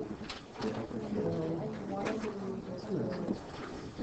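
Indistinct, quiet talk of students' voices in a classroom, low murmured speech with no clear words.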